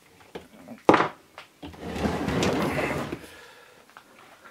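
A sharp knock about a second in, then a second and a half of scraping and rustling as the 3D printer's metal-cased power supply is shifted and lifted by hand.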